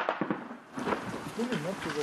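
A few sudden cracks of machine-gun fire in the first second, then a man talking.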